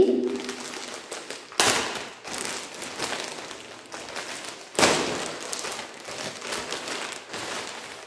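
Clear plastic garment bag crinkling and rustling as it is handled and pulled open, with two louder crackles, at about one and a half and about five seconds in.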